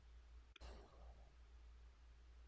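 Near silence with a low steady hum. About half a second in, a brief soft exhale of breath.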